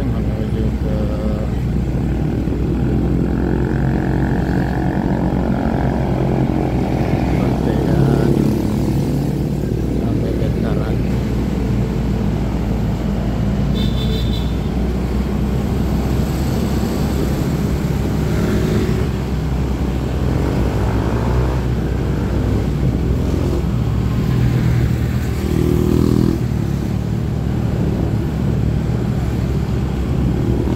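Steady motorcycle engine and wind rumble while riding through city traffic, with other motorbikes and cars passing close by.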